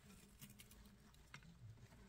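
Faint rustling and a few light clicks in wood-shaving bedding as two albino pet mice are set down into their cage, with small ticks about half a second in and another near the middle.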